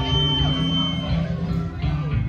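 Live band music with the electric bass guitar's low notes prominent, and a thin steady high tone held through about the first second.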